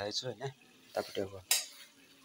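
A metal utensil clinks once, sharply, against a cooking pot about one and a half seconds in, amid the clatter of pots being handled on a stove.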